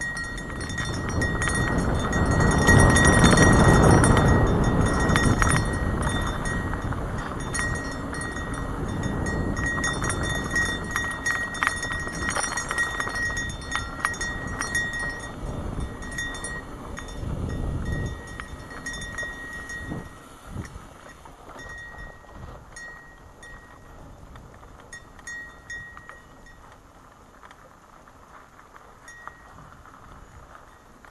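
Wind rushing over a helmet-mounted camera microphone and tyres rolling on a dusty dirt trail during a fast mountain-bike descent, with scattered rattling clicks from the bike. It is loudest a few seconds in, then fades steadily as the bike slows.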